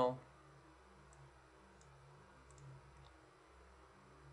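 Faint, scattered clicks from a computer mouse and keyboard, about five in all, over a low steady hum.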